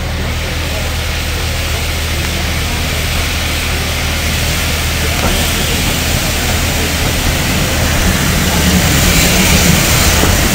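GWR City Class 4-4-0 steam locomotive No. 3717 City of Truro running tender-first into the platform and passing close by. Its sound grows steadily louder as it approaches.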